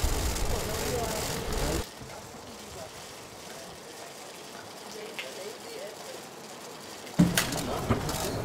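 Outdoor ambience with faint voices of people talking as they walk, over a low rumble for the first two seconds, then quieter. Near the end the sound abruptly grows louder, with a few sharp clicks.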